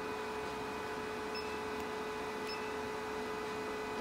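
808 nm diode laser hair-removal machine running with a steady hum.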